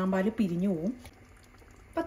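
A voice speaking for about the first second, then the faint sound of a coconut-milk mutton stew simmering in the pan.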